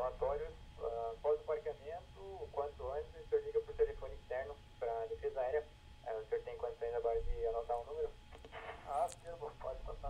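An air traffic controller's voice over aviation radio, thin and tinny, speaking in several short phrases with pauses. The controller is reading out a phone number for the pilot to call air defence.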